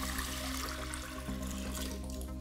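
Water poured from a glass jug into a clear acrylic tank that already holds some water: a steady splashing rush of water falling into water. Background music with sustained notes plays underneath.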